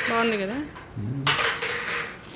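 A brief metallic clatter about a second and a quarter in, as a metal pen is handled and set down over a gift box.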